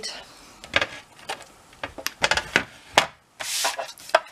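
Plastic scoring board and card stock being handled on a cutting mat: a run of light knocks and clatters as the board is set down and positioned, then a short scraping rub as the card is slid into place.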